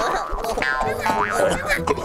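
Cartoon scuffle sound effects: springy boing-like glides, several of them rising quickly in the second half, and squeaky cartoon voices over background music.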